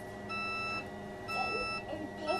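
Motorhome automatic leveling jacks' warning beeper sounding while the jacks retract: half-second beeps about once a second, over a low steady hum.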